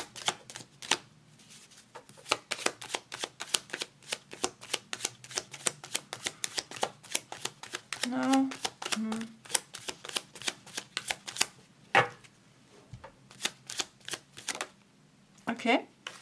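A tarot deck shuffled by hand: a rapid run of crisp card snaps, several a second, that stops about eleven seconds in, with a brief murmured hum about eight seconds in.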